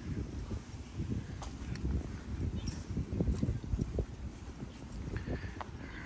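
Footsteps of a person walking on grass close to the microphone: irregular soft low thuds with a few sharper clicks, over a faint hiss of outdoor air.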